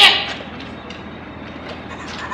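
Steady outdoor urban background noise, after a brief loud burst right at the start.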